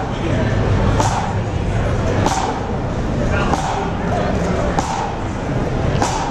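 Pipe band drums beating an even, slow marching stroke, a sharp hit about every second and a quarter, over the loud chatter of a crowd.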